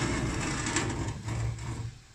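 An earthenware pot scraping and knocking as it is pushed by hand across the floor of a hot oven. The sound cuts off suddenly near the end.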